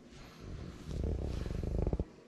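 Fabric rustling and rubbing as a scarf is pulled off a hanger and handled close to the microphone. The noise grows louder and rougher over the second second and stops suddenly at the end.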